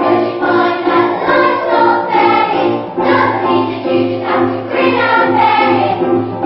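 A group of children singing together on stage, with instrumental accompaniment under them.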